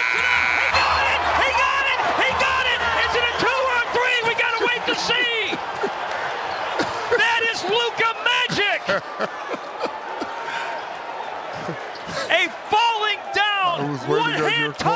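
Arena game horn sounding at the final buzzer, cutting off under a second in, followed by many short sneaker squeaks on the hardwood court and scattered shouts as players celebrate a game-winning shot.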